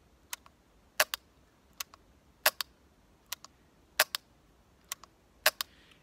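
Rossi Tuffy single-shot .410 shotgun's trigger and action clicking again and again with the safety on, in sharp clicks, often two close together, about once a second; the gun does not fire, showing the safety holding.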